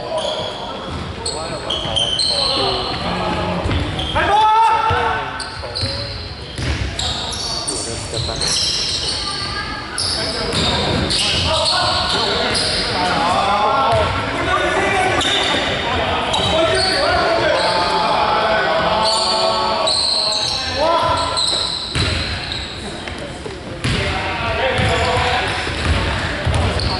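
Basketball being bounced on a wooden court, with voices calling out over it, echoing in a large sports hall.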